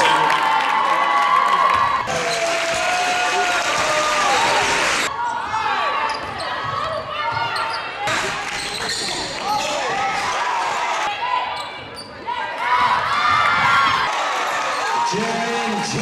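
Basketball game sound: a ball dribbled on a hardwood court, with spectators' voices, in short clips from different games that cut abruptly every few seconds.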